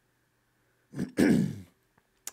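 A man clearing his throat about a second in: a short rasp, then a throaty sound falling in pitch.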